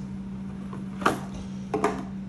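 Cardboard sunglasses boxes and cases handled on a hard countertop, with a light knock about a second in and another just before the end.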